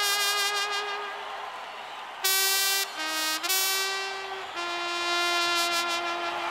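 Trumpet playing a slow solo of long held notes that step between a few pitches. A loud, bright note comes in a little after two seconds in.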